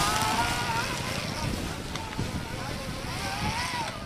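Electric Motion E-Motion trial motorcycle's electric motor whining, its pitch rising and falling with the throttle as it climbs over rocks, with a couple of knocks from the tyres on stone.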